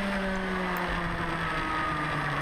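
Rotax Mini Max two-stroke kart engine running at high revs, its pitch falling steadily as the revs come down, then dropping a step lower near the end.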